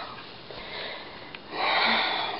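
A woman's breathing between sentences: soft breath noise, then a louder breathy sniff or inhale about one and a half seconds in, just before she speaks again. A small click comes just before the inhale.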